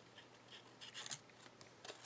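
Faint rustling and light scraping of paper being handled and slid around a small book, a few soft touches spread through the moment.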